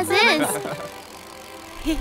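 A cartoon character laughing briefly, then a quieter stretch of faint background sound, with a low rumble starting near the end.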